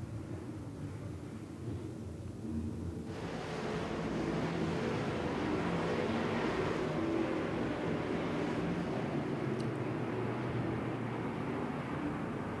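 A pack of dirt late model race cars with V8 engines running at racing speed around a dirt oval. The sound grows louder and fuller about three seconds in as the cars come nearer, then holds steady.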